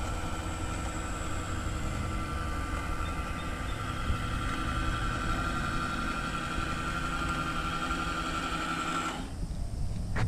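Small electric motor of a remote-control boat whining steadily as the boat runs across the water, over a low rumble. The whine cuts off about nine seconds in.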